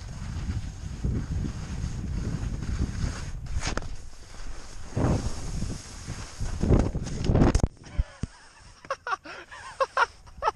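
Wind rushing over the camera microphone and snow scraping under the rider while sliding downhill, with louder scrapes near the middle and just before the end. It stops suddenly, and short breathy voice sounds follow near the end.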